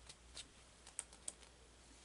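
Faint light ticks and taps from fingers handling the pages of a paper journal: a few small clicks, the sharpest about a second in, as a page is being turned.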